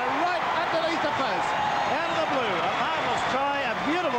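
A man's voice talking over steady crowd noise from the stadium after a try.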